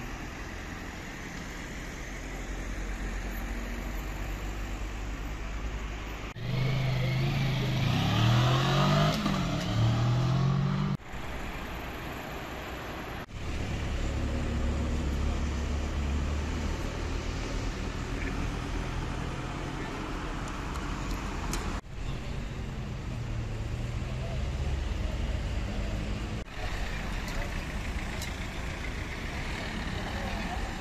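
Road traffic on a city street, a steady rumble of passing cars, with people's voices at times. The sound changes abruptly several times where short clips are cut together, and there is a louder passage about six seconds in, lasting roughly five seconds, with tones gliding up and down.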